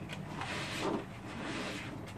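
Hands squishing and working a wet mix of instant rice, ketchup and salt in a bucket, rice pack bait for carp, in two rubbing swells.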